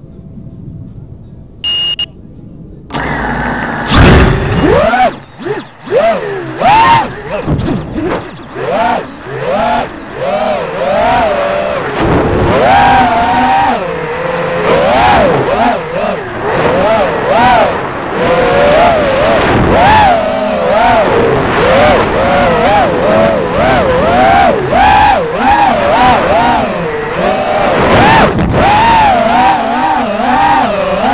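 FPV quadcopter's electric motors and propellers, heard through its onboard camera: a short beep about two seconds in, then the motors spin up suddenly about a second later and run loud, their whine rising and falling constantly with the throttle as the quad is flown hard.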